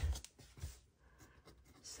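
Faint scratching of a pencil writing on a workbook page, with a few soft bumps of hand and paper near the start.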